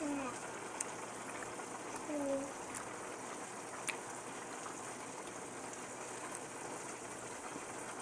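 Steady low hiss of food cooking, from a deep fryer and a pot of water heating nearby, with a few faint ticks and two brief vocal sounds, one at the start and one about two seconds in.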